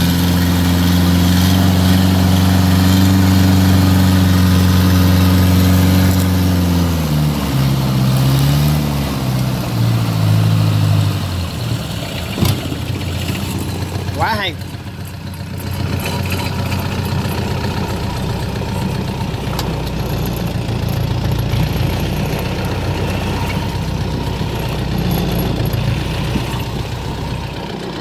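Long-tail boat engine driving a long-shaft propeller, running steadily at speed with the rush of its wake. Its pitch falls between about seven and eleven seconds in as the engine slows, then it runs on lower and quieter.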